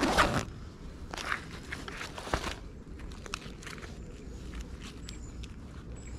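A backpack zipper pulled open in one quick rasp, followed over the next couple of seconds by rustling of fabric and gear with a few light clicks, then softer handling noise.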